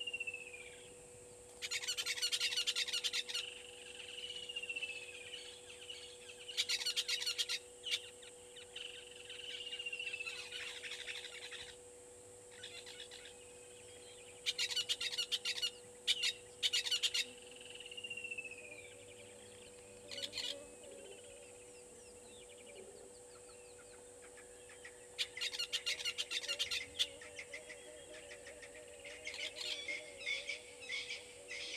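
Wild birds calling: a clear whistle that slides down in pitch recurs every five seconds or so, alternating with short bursts of rapid chattering. A steady faint hum and a high hiss run underneath.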